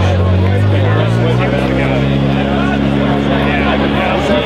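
A motor vehicle's engine running close by, its low drone rising in pitch over the first couple of seconds and then holding steady, under people talking.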